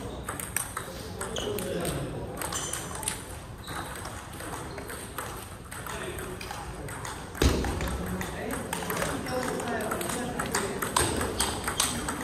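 Table tennis balls clicking off bats and tables in quick, irregular rallies, from this table and others around a large hall, with faint background voices. A heavier thump lands about seven and a half seconds in.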